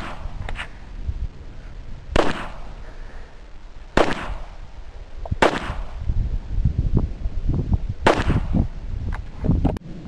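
Gunshots on an outdoor range: single shots, four or five in all, spaced roughly one and a half to two and a half seconds apart.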